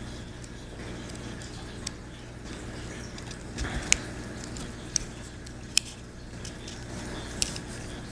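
Small sharp clicks and taps of a pin and small metal parts against a Ruger 10/22 trigger housing as the ejector is lined up with its pin, a handful of separate clicks spread over the seconds, with a brief handling rustle near the middle. A steady low hum sits underneath.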